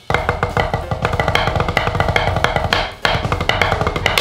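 Fast drumming: a dense run of stick strokes with deep bass underneath, with a brief break about three seconds in.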